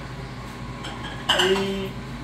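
Dishes and cutlery clinking on a table, with a sudden louder clatter a little past the middle.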